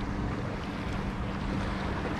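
A motorboat's engine giving a steady low hum across the water, over a rush of wind and water noise.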